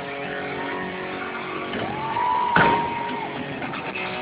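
Electric guitars of a live thrash metal band ringing through the amplifiers in a large hall, holding sustained notes. A high tone slides up about two seconds in, holds, and slides back down a second later.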